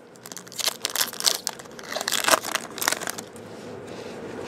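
Stiff chrome trading cards being flicked through by hand: a rapid, irregular run of crackly snaps and rustles that dies down near the end.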